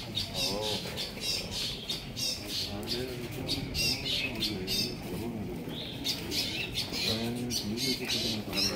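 Birds chirping and squawking over and over in short, high calls, with men's voices talking low underneath.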